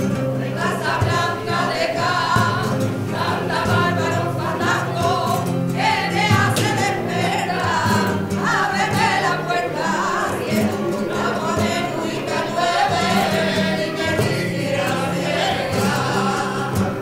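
A mixed group of men and women singing flamenco together in chorus, accompanied by two Spanish guitars.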